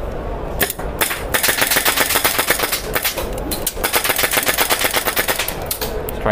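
HPA airsoft rifle with a Nexxus fully mechanical HPA engine firing: a few single shots in the first second, then a long full-auto burst of rapid, evenly spaced shots lasting about four and a half seconds, with a brief break partway through.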